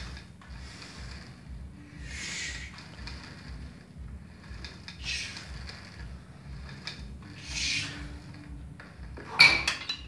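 A man's slow, hissing breaths out, three of them a few seconds apart, while he holds a bent-over stretch, over a faint low pulsing hum. Near the end comes a short burst of loud knocks and rustling, the loudest sound here.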